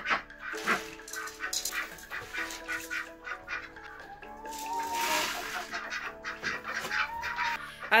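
Background music, with dry rabbit feed pellets poured from a plastic jug into a plastic measuring cup: a rattling rush about five seconds in, with scattered clicks of pellets and plastic.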